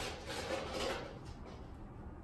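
Sheet-metal closure ring being wrapped around a single-wall chimney pipe section: a sharp click at the start, then soft, irregular scraping and rustling as the metal is handled into place.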